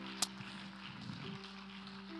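Soft keyboard chords held under the pause, with a new note coming in a little past halfway; a short click near the start.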